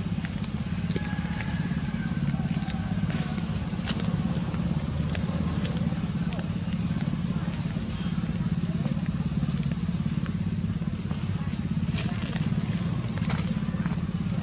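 A small engine running at a steady low hum, with light scattered clicks over it.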